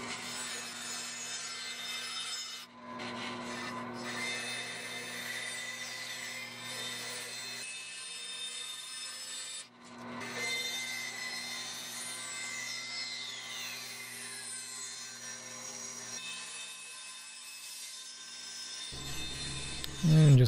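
Bandsaw running with a steady motor hum, its blade cutting through a wenge guitar neck blank. The sound dips briefly about 3 seconds in and again about 10 seconds in.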